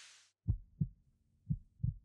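A fading whoosh, then two low double thumps in a heartbeat rhythm: a sound-design heartbeat effect.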